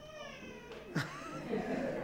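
Faint, high-pitched child's voice, with a single short knock about a second in.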